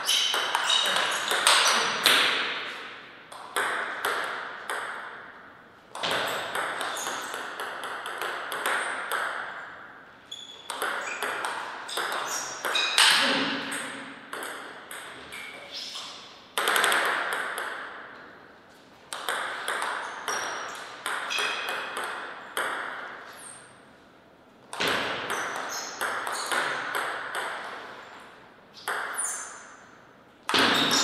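Table tennis ball clicking back and forth between bats and table in a string of fast rallies, each a few seconds long, with short pauses between points.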